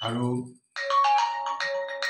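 A man's speech breaks off about half a second in; after a brief gap, a bright marimba-like melody of quick, clear notes plays on its own, ringtone-style.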